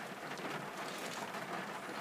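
Heavy rain falling, a steady even hiss.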